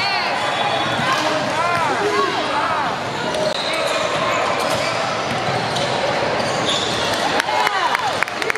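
Basketball game audio in a gym: a ball bouncing on the court, short high squeaks of sneakers on the floor, and the voices of players and spectators.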